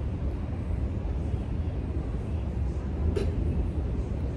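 Steady low rumble of outdoor background noise, from wind and road traffic, with no clear single event.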